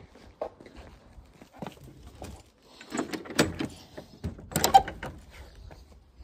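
A wooden garden gate being opened and passed through: a run of clicks and knocks from the latch and boards, loudest about three seconds in and again near five seconds, with footsteps on paving between them.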